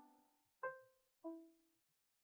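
Soft background piano music: a few single notes, each struck and left to fade, the last about a second and a quarter in.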